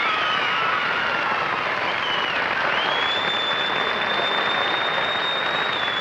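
Studio audience applauding steadily, with high whistles over the clapping; one whistle is held on a single pitch for about three seconds in the second half.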